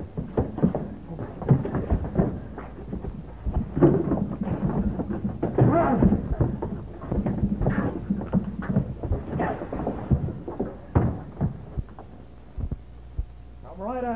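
Fistfight scuffle: a rapid run of thuds and knocks from blows and bodies hitting, with men grunting and straining in the middle of it.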